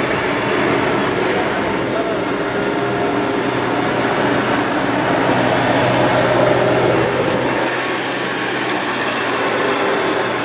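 Steady background rumble and hum with faint, indistinct voices in it. No distinct strikes or rhythmic beats stand out.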